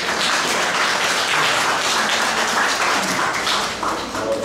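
Audience applauding, a dense patter of many hands clapping that starts at once and dies away near the end.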